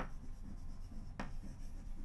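Chalk writing on a blackboard: faint scratchy strokes, with two sharp clicks of the chalk against the board, one at the start and one just over a second in.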